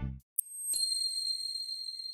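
The outro music stops on a final low beat. About three-quarters of a second in, a bright, high-pitched chime strikes and rings on, fading slowly: a logo sound effect.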